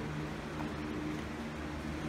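A steady low mechanical hum with a faint hiss underneath, unchanging throughout.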